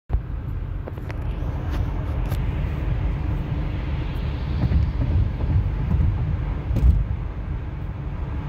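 Car driving at highway speed, heard from inside the cabin: a steady low rumble of road and engine noise, with a few faint clicks.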